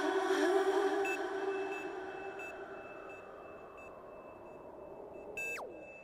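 Closing bars of an electronic track: a held synth chord fades away under a steady high electronic tone that blips on and off. Near the end a quick sweep falls steeply in pitch.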